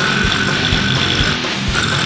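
Goregrind metal song with heavily distorted electric guitar, bass and fast drums. A high held tone sits above the band, drops out for a moment past the middle and comes back.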